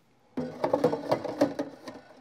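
A plastic espresso-machine water tank being lowered back into its compartment: a rapid run of rattles and clicks lasting about a second and a half, stopping just before the end.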